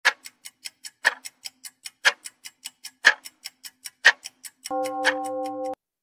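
Ticking sound effect, about five ticks a second with a louder tick on each second, like a countdown timer, followed near the end by a steady electronic tone held about a second that cuts off suddenly.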